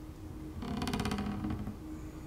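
Horror-film soundtrack playing from the TV: a low steady drone, and from about half a second in a door creaking slowly for about a second as a rapid run of even clicks.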